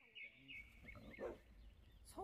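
Birds chirping in quick repeated notes, then about a second in a short, louder dog vocalization, over a low rumble of wind on the microphone.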